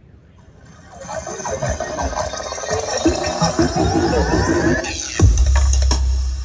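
Electronic dance music played through a large outdoor JIC speaker demo system (DN 75 tweeters, LS 12075 mids, LS 18125 low and sub drivers in line arrays and sub stacks). It comes in about a second in, and a heavy sub-bass drop hits about five seconds in.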